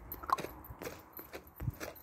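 Footsteps on paving slabs, with the knocks and rubs of a phone being handled as it is carried. The sharper clicks come at uneven intervals.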